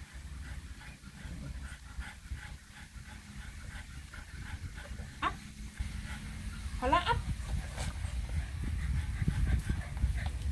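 Bulldog puppy whining: a short rising whine about five seconds in, then a longer wavering whine around seven seconds. Low rumbling noise on the microphone underneath, louder in the second half.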